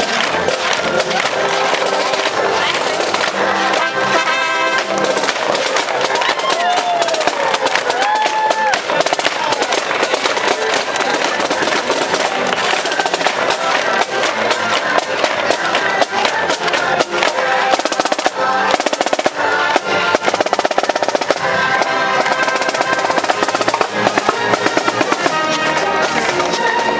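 Marching-band parade music with rapid snare drum rolls.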